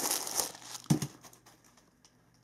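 White paper stuffing crinkling as it is pulled out of a new leather shoe. The crinkling is dense at first, then thins to a few crackles and dies away about one and a half seconds in, with a short voice sound about a second in.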